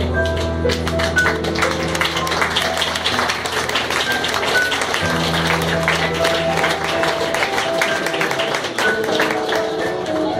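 Live acoustic guitar played in busy, percussive strokes over sustained electric keyboard chords: an instrumental passage of a song.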